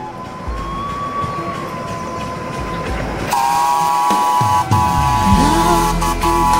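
Live-steam miniature railway locomotive hissing steam, then from about halfway through its whistle blowing a long steady chord, with a brief break near the end.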